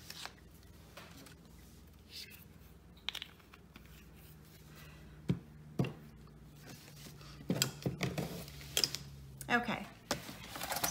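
Light handling sounds of paper and a plastic paper trimmer: a few scattered taps and clicks, then a busier run of knocks and paper rustling in the last two or three seconds as the collaged sheet is moved onto the trimmer. A faint low hum runs underneath.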